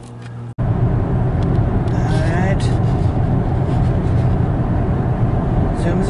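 Steady road noise inside a car moving at highway speed: a loud, even rumble of tyres and engine heard from the cabin. It starts abruptly about half a second in.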